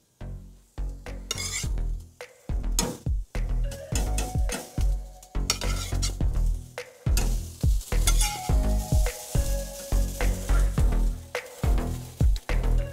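Raw beef burger patties sizzling on a hot charcoal grill grate, laid down one after another.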